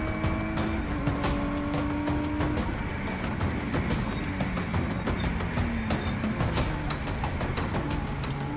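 Ginetta G56 GTA race car's V6 engine heard from inside the cockpit, running hard at a steady, slowly climbing pitch that steps down about a second in and again a few seconds later. Sharp clicks and rattles from the car run throughout.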